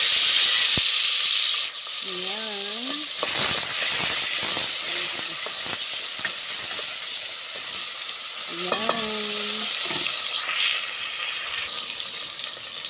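Tomato, onion and garlic sizzling steadily in hot oil in an aluminium cooking pot, with a utensil now and then clicking and scraping against the pot as they are stirred.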